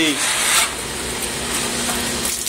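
Water rushing out of chiller absorber tubes onto the floor while a brush on water-fed copper tubing scrubs inside them, with a faint steady hum underneath. The water carries dirt flushed from the tubes.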